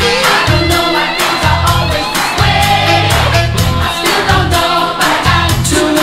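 1980s pop-rock song playing, with a steady drum beat, pulsing bass and sustained layered backing vocals.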